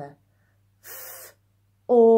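A woman sounding out a word sound by sound for children to blend: a brief hissed consonant about a second in, then, near the end, a loud, steady, held 'or' vowel begins.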